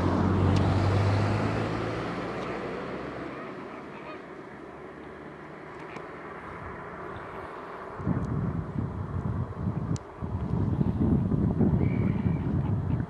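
Greater flamingos honking in a goose-like way, louder and choppy from about eight seconds in. A steady engine hum fades away over the first few seconds.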